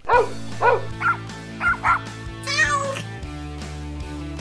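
A dog barking about five short times over the start of an outro music track with a steady bass, followed about two and a half seconds in by a longer, wavering, higher call.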